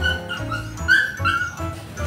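A dog whining in a series of short, high whimpers.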